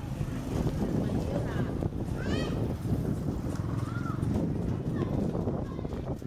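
Street ambience heard from a slowly moving bicycle: a steady low rumble of wind and road noise, with voices of people nearby. A high call rises and falls a little over two seconds in.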